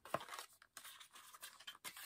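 A small cardboard box being opened by hand: faint rustling and scraping of card, with a few light clicks as the flap comes free.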